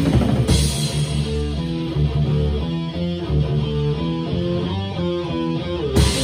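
Rock music with a drum kit played with rods (bundled dowel sticks), a cymbal crash about half a second in. After that the drumming thins out under a melody of separate, stepping pitched notes.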